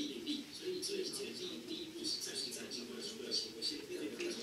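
Speech only: a man talking over a video call, played through the room's loudspeakers and picked up by the room microphone.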